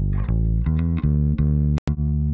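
Bass guitar track playing a line of plucked notes, heard on its own while it is being mixed. Near the end, playback cuts out for an instant between two sharp clicks, then the bass carries on.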